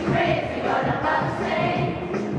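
A choir of young voices singing together, with music.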